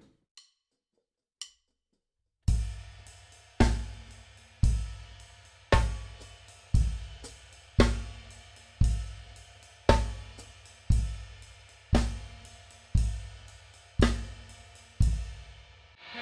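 Gretsch drum kit played as a slow groove, nice and slow for a first read-through of a new exercise. After two faint clicks, it comes in about two and a half seconds in: heavy bass drum and cymbal strokes about once a second, each ringing out, with lighter hi-hat and cymbal notes between.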